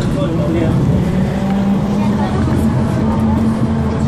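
Articulated Van Hool city bus running along the street, heard from inside the cabin: a steady engine and driveline drone whose hum steps up in pitch about a second and a half in as the bus gathers speed.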